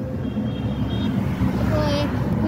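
Piaggio Ape E-City FX electric three-wheeler driving along a road, heard from inside its open rear cabin: a steady low rumble of tyres and body. A voice begins near the end.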